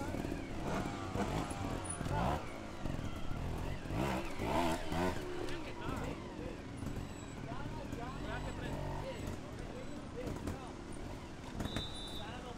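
Trials motorcycle engine revving, its pitch rising and falling, with indistinct voices of people nearby.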